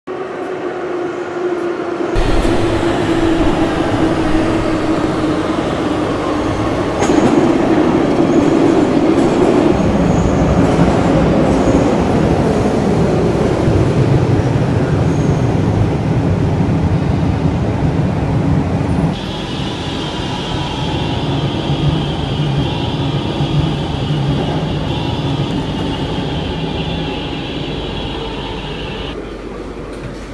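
Barcelona Metro train heard from inside the carriage: a loud, steady running rumble and rattle that starts about two seconds in, with a motor whine that slowly falls in pitch over the next several seconds. A steady high-pitched tone joins in the last third and the noise eases near the end as the train slows into a station.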